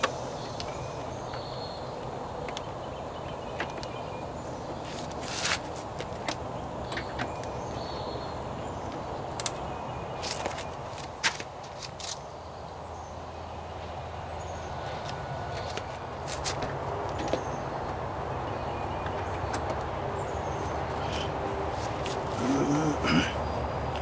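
A few sharp plastic clicks and knocks as a turn-signal lamp housing is handled and fitted into place, over a steady outdoor background with a thin, high insect drone.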